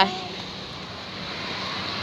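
A vehicle approaching along the highway, its road noise growing gradually louder.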